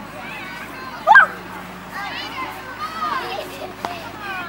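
Many young children's voices calling and chattering as they run past on grass. About a second in, one loud rising shout or squeal stands out above the rest.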